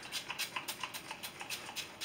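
Fine-mist pump bottle of Mario Badescu facial spray being spritzed onto the face in a quick run of short hissing sprays, several a second.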